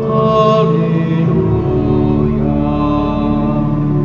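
Church organ music in slow, long held notes, the melody moving to a new note about once a second.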